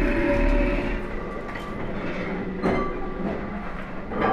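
A large metal lathe running, spinning a grooved steel crane rope drum: a steady mechanical rumble with a faint whine, louder for the first second, and a sharp knock nearly three seconds in.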